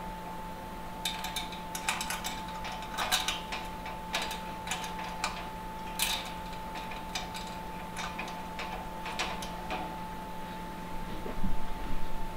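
Metal hanging chain and hook of a fluorescent shop-light fixture clinking and rattling in irregular clicks as the light is lowered toward the seedlings, over a steady hum. The clicks stop near the end.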